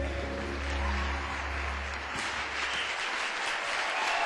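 Audience applauding, with the last notes of the music fading out over the first two seconds.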